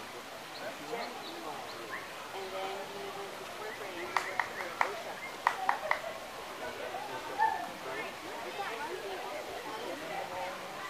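Indistinct chatter of people's voices, with a quick run of about six sharp clicks near the middle.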